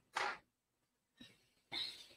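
A person coughing: a short cough just after the start, and another near the end.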